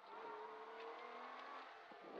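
Faint rally car engine heard from inside the cockpit, holding a steady note that rises slightly as the car accelerates.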